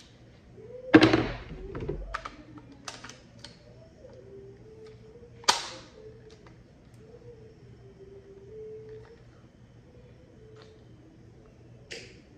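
Handling noises as a Glock 19X magazine is fitted into a PAK-9 pistol: a heavy thunk about a second in, a few light clicks, then one sharp click about five and a half seconds in.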